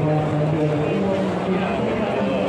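Dense crowd chatter: many voices talking over one another at a steady level, with no single voice standing out.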